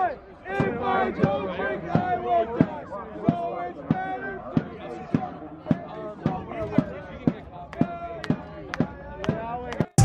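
Soccer supporters chanting in a steady rhythm, each shouted syllable landing on a drum beat, about three beats every two seconds.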